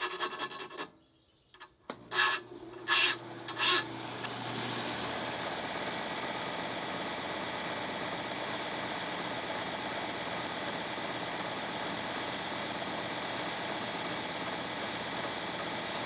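A hand file scrapes a few strokes across the edges of a steel power-planer blade. Then a Delta disc sander starts and runs steadily, and near the end the blade is lightly touched to the spinning disc in short passes to grind an arc into its edge.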